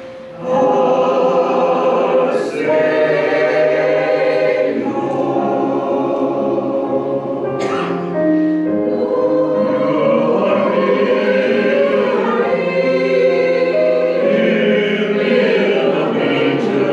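Mixed church choir singing a choral anthem in parts, with long held notes. There is a brief break for breath right at the start before the voices come back in.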